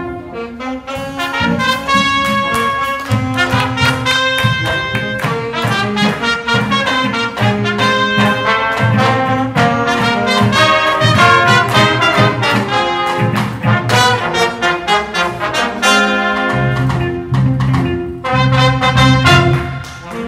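Middle-school jazz combo playing live, with trumpets, trombone and saxophones in front over drum kit, electric guitar and keyboard.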